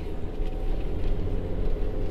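A small van's engine and tyre noise heard from inside the cabin while driving: a steady low rumble with a faint engine hum.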